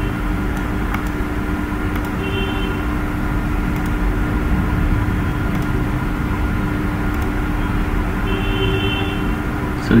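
Steady background hum and hiss, with a few faint clicks.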